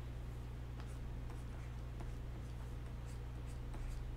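Stylus scratching across a Wacom graphics tablet in short, irregular drawing strokes, faint over a steady low hum.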